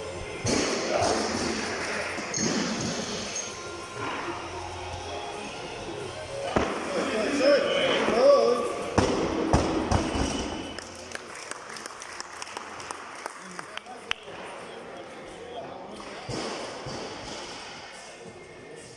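Heavily loaded barbell jerked from steel jerk blocks and set back down on them, giving a few heavy metal clanks. Voices and music sound in the gym behind.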